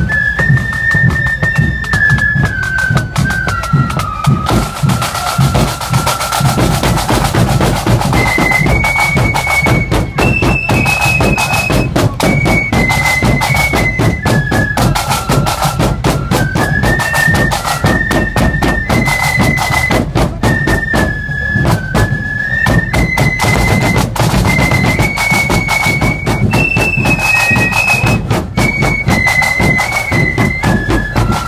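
Marching flute band playing: a line of flutes carries a single tune that steps up and down, over a steady beat from a bass drum and snare drums.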